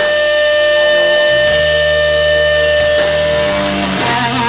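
Live blues-rock band playing an instrumental passage, led by electric guitar on a Fender Stratocaster: one long high note is held steady over bass notes that change about a second and a half in and again near the end.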